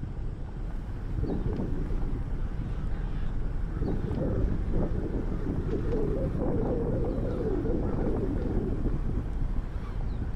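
Wind buffeting an outside camera microphone over the low running of a vehicle's engine as it pulls away from a stop and drives slowly, the engine note wavering as it picks up speed in the second half.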